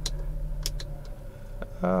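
Peugeot 407's ES9A V6 engine idling quietly, heard from inside the cabin as a steady low hum, with a few faint clicks.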